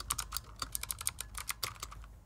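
Fast typing on a Razer Huntsman Mini 60% keyboard with optical switches: a quick, uneven run of key clicks.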